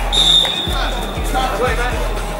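Background pop music: a song with vocals over a steady kick-drum beat of about two beats a second, with a high steady tone held for about a second near the start.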